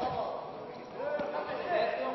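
Men's voices calling out in an echoing sports hall, with a thud of the wrestlers hitting the mat right at the start and another about a second in.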